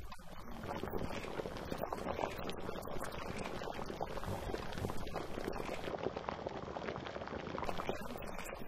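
A thick yellow spiced sauce simmering in a stainless steel pan, bubbling with a steady crackle of many small pops.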